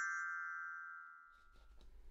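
Children's glockenspiel with coloured metal bars: one mallet-struck note ringing and fading away over about the first second and a half. It is the cue to turn the page.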